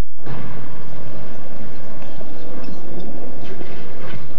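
A brief silent break, then a dense, steady rumbling and clattering background noise, the ambience under the opening of a jail-corridor scene in a TV commercial.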